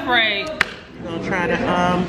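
People talking, with a single sharp click about half a second in.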